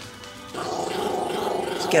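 Chihuahua growling protectively over its bone: one steady, rough growl starting about half a second in.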